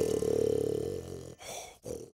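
A cartoon character's voiced snore: one long drawn-out snore, then two short, quieter ones near the end.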